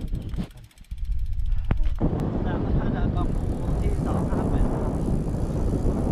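Wind rushing over a handheld camera's microphone on a moving bicycle. It is a loud, steady rush that comes in about a second in and fills out from about two seconds in.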